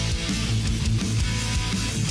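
Instrumental section of a rock song before the singing comes in: electric guitar, bass and drums playing at a steady, loud level.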